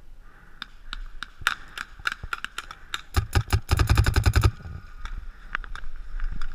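Paintball markers firing: scattered single shots, then a rapid burst of about ten shots a second lasting about a second and a half in the middle.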